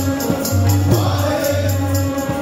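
Sikh kirtan: a harmonium holds sustained chords while a tabla keeps a steady, quick rhythm under singing voices.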